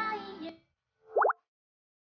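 Edited-in cartoon sound effect: a short pitched, voice-like sound fades out in the first half second, then two quick rising 'bloop' sweeps come in rapid succession about a second in.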